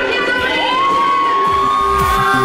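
A woman's voice holding one long high note in a live pop cover performance, sliding up into it about half a second in, while the band's beat drops out beneath it.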